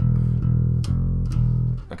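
Electric bass playing a simple, heavy rock/metal riff on the low E string: a few low notes, each held until the next pluck, alternating open E with a note fretted on the E string.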